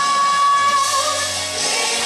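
Mixed youth choir singing in church, the microphone-led female voice holding one long high note that ends a little under a second in, as a low accompanying tone comes in.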